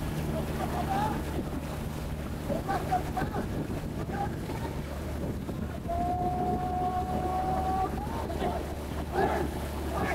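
A paddling crew on a Khmer long racing boat shouting and calling in short bursts over a steady low drone and wind on the microphone. Near the middle a single held call or tone lasts about two seconds and lifts slightly at its end.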